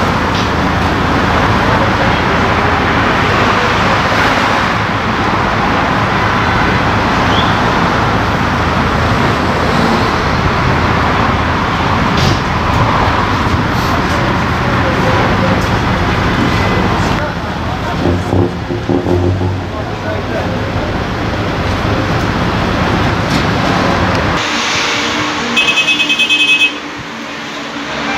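Steady road traffic noise from cars and buses passing on a busy road, with some voices in it. Near the end the sound drops abruptly and a short, rapid electronic beeping lasts about a second.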